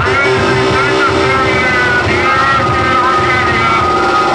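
Live electronic noise music from a table of electronics and a mixer: a loud, dense drone with warbling tones that glide up and down above it.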